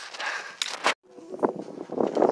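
A hiker's footsteps and gear rustling on a trail, with a few sharp crunches. The sound cuts off abruptly to silence about halfway through, then similar walking noise resumes.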